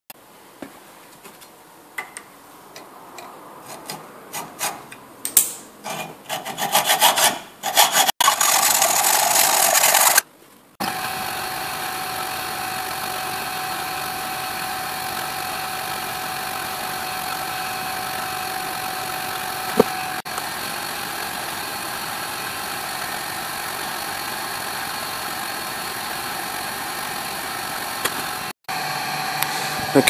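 Hand filing and deburring of aluminium plate edges: irregular rasping strokes that grow louder over the first eight seconds, ending in a couple of seconds of loud continuous scraping. After a short break, a steady mechanical hum with a fixed tone runs for most of the rest.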